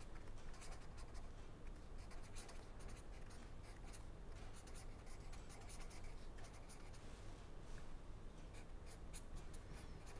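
Pen writing on paper: runs of short, faint scratchy strokes as words and symbols are written, over a low steady hum.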